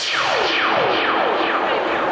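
Sound effect over the PA: a falling electronic swoop, from high to low, repeated about twice a second with echo.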